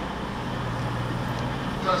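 Steady low hum and rumble of a railway platform with a train standing at it, and a station public-address announcement starting near the end.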